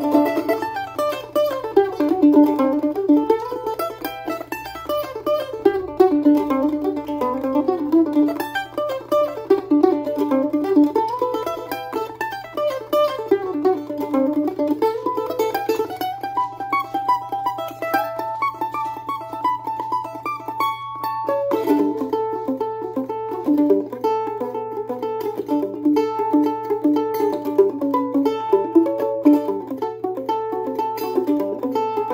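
Washburn A-style mandolin played solo, a folk instrumental of quick picked single-note runs. About 21 seconds in the melody breaks off briefly and a new section begins.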